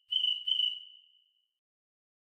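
Cricket-chirp sound effect from theCRICKETtoy iPhone app: two short, high chirps in quick succession, then fading away.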